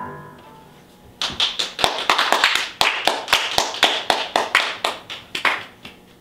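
A violin's last note rings off, then about a second later a few people clap in distinct, separate claps for about four seconds.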